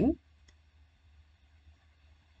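A few faint, separate clicks of a stylus tapping on a drawing tablet as handwriting is written on screen.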